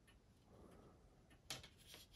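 Near silence, broken by a single faint click about one and a half seconds in, as the plastic model deck-house part is handled.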